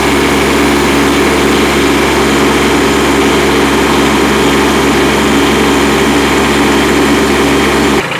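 Kubota B2301 compact tractor's three-cylinder diesel running loud and steady while the LA435 front loader's hydraulics lift a pallet of nearly 1,100 pounds. The sound starts and stops abruptly.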